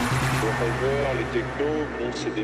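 Acid techno in a breakdown: the dense beat drops out about half a second in, leaving a held low bass note with a voice speaking over it.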